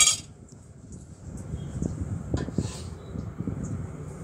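A utensil clinks against a dish right at the start with a short ring, followed by low rumbling handling noise and a few faint knocks as things are moved about on a kitchen counter.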